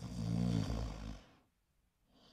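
A man snoring: one long, rumbling snore lasting a little over a second, then a pause.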